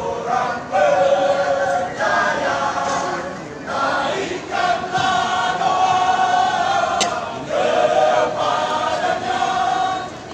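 Male choir singing, holding long notes in phrases with short breaks between them, heard from the audience.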